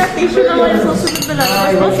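Metal cutlery clinking against a plate and tableware as it is set out from a serving tray, with a short run of clinks about a second in.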